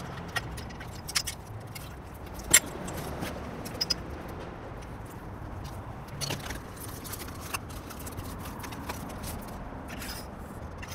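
Handling clicks and metallic clinks as shark fin aerials and their cables are mounted on a metal telescopic aerial stand and its clamps are adjusted. The loudest is a sharp knock about two and a half seconds in, with scattered lighter clicks over a steady low background noise.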